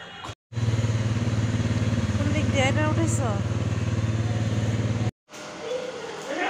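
An engine running steadily with a rapid even pulse for about four and a half seconds, starting and stopping abruptly between two short gaps of silence. A voice is heard briefly over it near the middle.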